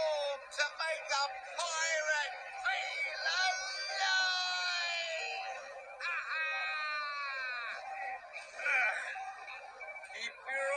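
Cartoon characters' voices, electronically altered so that they sound funny, with no recognisable words: a run of warbling cries and long drawn-out wailing calls, the longest about midway and again just past the middle.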